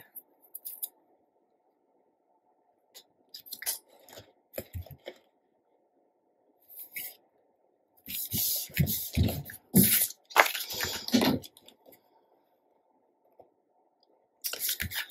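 Scrapbook paper being handled and pressed flat onto cardstock by hand: a few short rustles and scrapes, then a denser run of paper rustling and rubbing from about eight to eleven seconds in.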